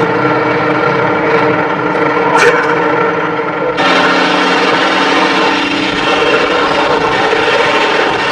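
ATV (quad bike) engine running as it works through deep mud. About four seconds in the sound cuts abruptly to a steady engine drone with road noise as a couch is towed along asphalt.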